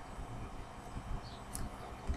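A few faint, short ticks of a baseball card in a clear rigid plastic holder being handled, over a low steady room hum.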